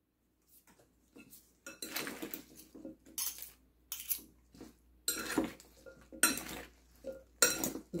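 Metal utensils tossing salad in a glass bowl: irregular clinks and scrapes of metal against glass, starting about a second in.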